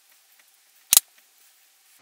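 A single sharp click about a second in, from the airsoft hop-up chamber being handled.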